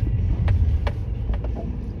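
Car engine and drivetrain running at low speed while the car is manoeuvred into a parking spot, a steady low rumble heard inside the cabin, with a few light clicks.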